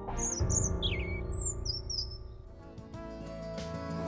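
Background music with a songbird chirping over it: a quick run of short, high chirps and a few falling notes in the first couple of seconds, then the music alone.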